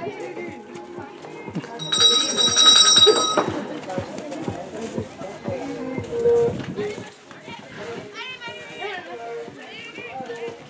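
A show-jumping start bell rings steadily for about a second and a half, about two seconds in, signalling the rider to begin her round. Spectators' voices and background music run underneath.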